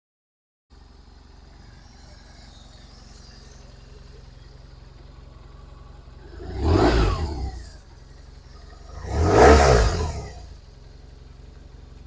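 2008 BMW R1200RT's flat-twin boxer engine idling, with the throttle blipped twice: two short revs a couple of seconds apart, the second one louder, each dropping back to idle.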